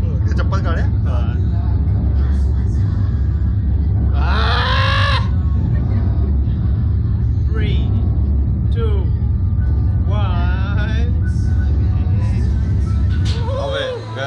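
Steady low rumble from the slingshot ride's machinery while the capsule is held before launch, with short snatches of voices and music over it about four and ten seconds in. The rumble cuts out suddenly near the end.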